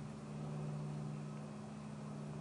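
A steady low hum under a faint even hiss, with no other sound standing out.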